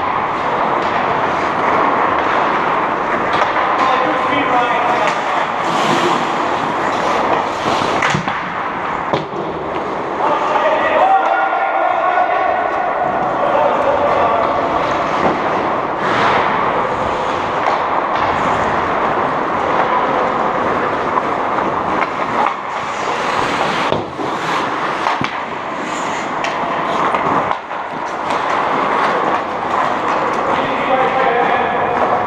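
Ice hockey rink during play: a steady rush of noise with sharp clacks of sticks and puck on the ice and boards, and players shouting a few seconds before the middle.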